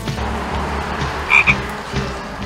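A small tan frog calling: two short, loud, high croaks in quick succession about one and a half seconds in, over a steady hiss.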